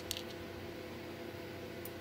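Quiet room tone: a steady hiss with a faint low hum, broken only by a couple of faint small ticks near the start and one near the end.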